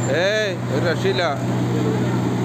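A road roller's diesel engine running with a steady hum, while a man calls out loudly twice in rising-and-falling shouts during the first second and a half.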